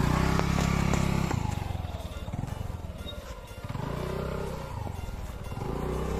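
Gearless scooter's small engine running at low revs, louder for the first second and a half, then easing off and picking up again about four seconds in, with music in the background.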